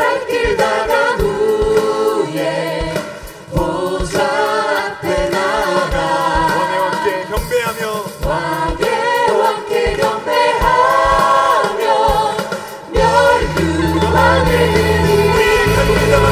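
A praise team singing a Korean worship song in unison into microphones, with a choir and band behind them keeping a steady beat. The music dips briefly twice, and the low end fills back in about thirteen seconds in.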